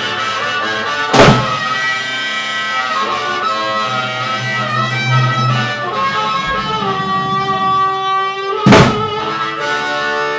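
Blues band music: harmonica playing held, bending notes over guitar. Two loud percussive hits come about a second in and near the end.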